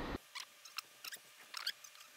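A scatter of faint small clicks and scratches: a steel oil control ring being pressed by hand into its groove on a Mazda RX-8 rotary engine rotor.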